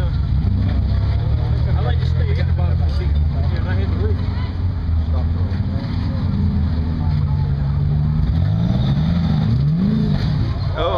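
Competition rock buggy's engine running under load as it crawls up a rocky slope. The revs rise and fall sharply a few times near the end.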